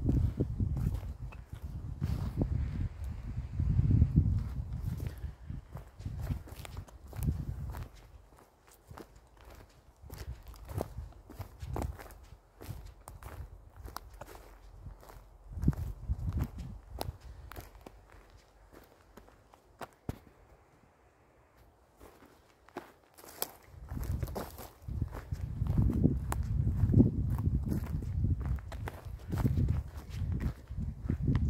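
Footsteps crunching on dry plant litter along a heath path, a steady walking pace throughout. A low rumble of wind on the microphone covers the steps in the first few seconds and again near the end.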